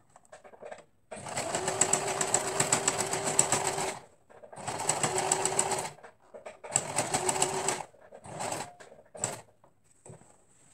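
Domestic sewing machine stitching a hem in three runs of a few seconds each, with short stops between them and two brief bursts near the end. Each run is a steady motor hum with a fast, even clatter of the needle.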